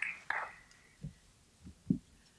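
Hushed, whispery speech trailing off in the first half-second, then a quiet room broken by three short, soft low thumps, the last and loudest just before the end.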